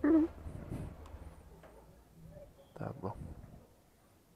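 An animal calling: one loud call right at the start, then two shorter calls close together about three seconds in.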